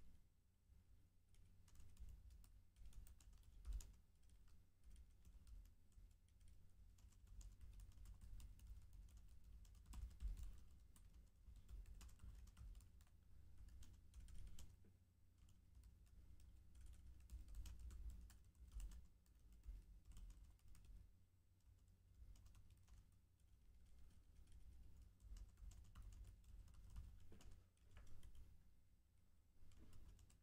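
Faint typing on a computer keyboard: irregular keystrokes in short runs with brief pauses.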